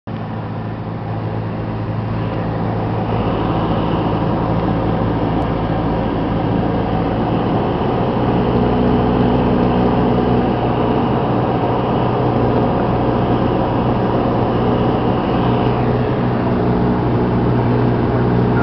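Cessna 172S's four-cylinder Lycoming engine and propeller droning steadily on approach, fading in over the first couple of seconds.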